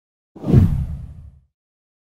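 A single deep whoosh sound effect for an animated intro: it swells in about a third of a second in, peaks quickly and fades away over about a second.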